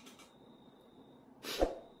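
A quiet pause broken about a second and a half in by one short, sharp breath noise from a man.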